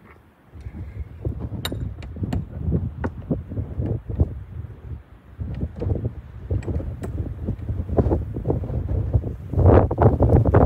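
Footsteps crunching through deep snow at a walking pace, with wind rumbling on the microphone. The steps pause briefly about halfway through.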